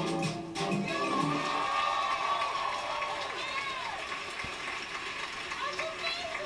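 Backing music for a yo-yo routine ends about a second in, and a studio audience cheers and applauds with high whoops, heard through a television speaker.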